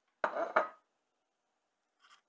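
A ceramic plate set down on a stainless steel counter: two quick clinks about a third of a second apart with a brief ring, over within a second.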